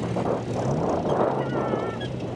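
Car engine running as the car drives slowly over a rough grass field, the revs rising briefly about half a second in, under a broad rushing noise.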